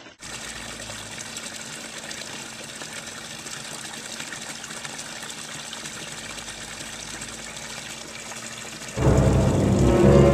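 Steady rush of running water at a small garden pond. About nine seconds in, loud ominous music starts and drowns it out.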